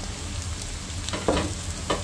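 Sliced bitter melon (ampalaya) sizzling in hot oil with sautéed onion and garlic in a frying pan, a steady frying hiss. Two short knocks come about a second in and near the end.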